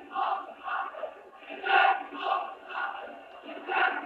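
Football crowd chanting in a steady rhythm of about two shouts a second: away supporters jeering a home player after a foul.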